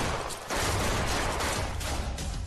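A ragged volley of rifle shots fired into the air as a warning, starting about half a second in and carrying on as a dense run of overlapping shots.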